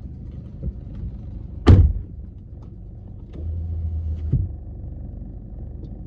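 A car door slams shut inside the car's cabin, one sharp loud bang about two seconds in, over a steady low rumble, with a smaller knock a couple of seconds later.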